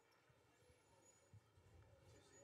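Near silence: faint background hiss between the commentators' remarks.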